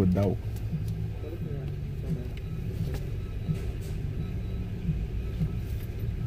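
Car engine idling steadily, a low hum heard from inside the cabin, with brief voices at the start.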